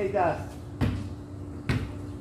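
Basketball thudding twice on a concrete court, about a second apart, after a short shout near the start.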